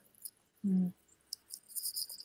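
A lull in a video-call conversation: a short hummed "mm", then a faint, steady high-pitched tone that comes in about a second and a half in.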